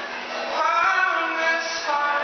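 A man singing into a microphone to his own acoustic guitar, live. A sung phrase begins about a quarter of the way in and runs until just before the end.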